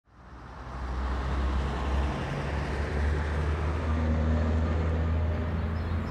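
Street traffic ambience fading in over the first second: a steady low rumble of vehicle engines under a constant wash of road noise.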